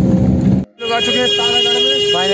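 A vehicle's engine running as it climbs a steep hill road, heard from inside, until it cuts off abruptly about two-thirds of a second in. Voices and a steady high-pitched tone follow.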